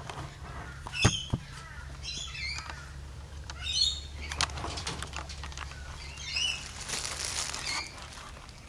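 Short, high-pitched bird chirps in several small clusters, over the sounds of a camera being handled on a fabric barbecue cover: a sharp knock about a second in as it is set down, and a rustle near the end as it is lifted.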